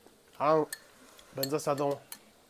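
Light clinks of chopsticks against bowls and a metal hot pot. Two short bursts of a person's voice are louder: the first is a single note that rises and falls, the second a few quick syllables.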